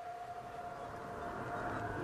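A faint steady tone held over a low rumble that slowly grows louder.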